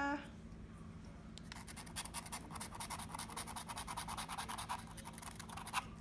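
Faint, rapid scratching of a pen-shaped scratcher tool rubbing the coating off a scratch-off lottery ticket. It starts about a second and a half in and stops just before the end.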